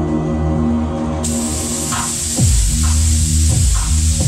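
Electronic music with sustained synth chords and a deep bass pulse. About a second in, a loud steady hiss starts and keeps going: a smoke-effect jet blasting fog.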